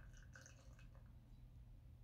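Near silence: room tone with a low hum, and a few faint soft sounds in the first second.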